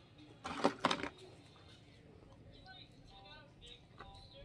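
A brief crunchy chewing burst about half a second in, then faint voices of people outside for about a second.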